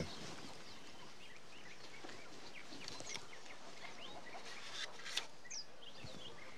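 Faint outdoor ambience with small birds chirping in the background and a short click about five seconds in.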